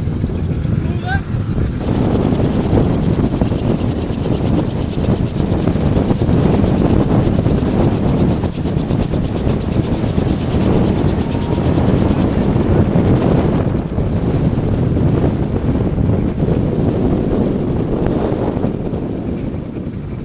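Strong wind blowing across the microphone: a loud, steady rush with heavy low rumble, changing character a few times.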